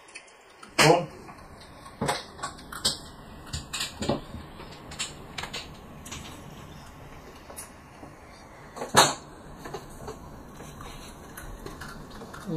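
Mahjong tiles clicking and clacking against each other and on the table top as players draw, place and discard them. The knocks are irregular, with the two loudest coming about a second in and about nine seconds in.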